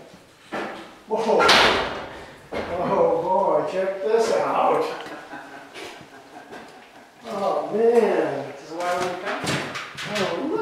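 People talking, with a loud burst of noise about a second in.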